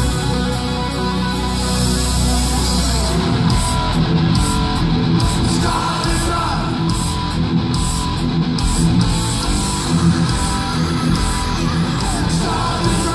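Live heavy metal played by a band with a symphony orchestra: distorted electric guitars, bass and drums, loud and continuous, with a low bass note held through the first three seconds.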